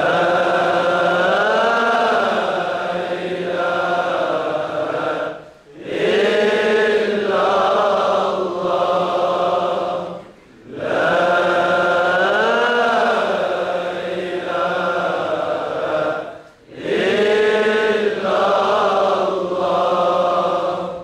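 Men's voices chanting zikr together in long, drawn-out phrases, four in all, with a short breath pause between each. The same melodic rise and fall returns every other phrase.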